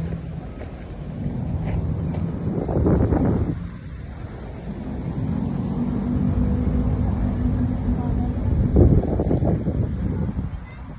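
Wind buffeting the microphone in gusts, rising to loud rumbling surges about three seconds in and again near the end, over a steady low hum.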